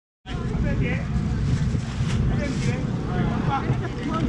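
Busy outdoor street-market din: a heavy, steady low rumble with faint, scattered voices of the crowd over it, starting abruptly a moment in.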